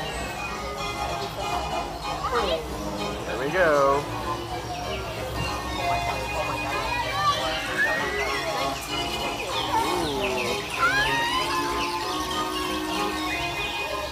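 Dark-ride soundtrack playing over the attraction's speakers: lively cartoon music with voices and sliding, whistle-like sound effects, one falling about three and a half seconds in and others rising later.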